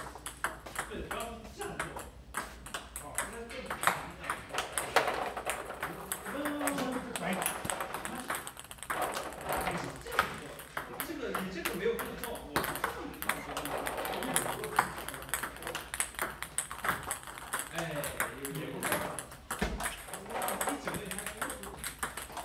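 Table tennis balls being hit and bouncing in a fast multiball drill: a quick, irregular run of light clicks from ball on paddle and tabletop, several a second.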